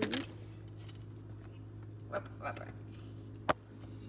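Small plastic toys being handled on a stone countertop: a few faint clicks and one sharp tap about three and a half seconds in, over a steady low hum.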